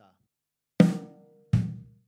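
Drum kit, played slowly: one snare drum hit with a ringing tail, then a bass drum hit about three-quarters of a second later. This is beat 3 of a fill, a dotted eighth on the snare followed by a sixteenth on the kick.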